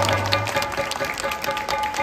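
Live stage music with steady held tones and scattered percussion hits. A loud low held note stops about half a second in.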